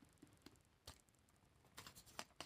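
Very faint, sparse clicks and taps of tarot cards being handled, a few single taps and then a quick run of them near the end as the deck is gathered.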